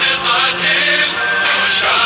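A male voice sings an Arabic Shia devotional chant, a mourning song in the style sung on the Arbaeen walk. Its notes are long and bend, and a steady low note runs beneath.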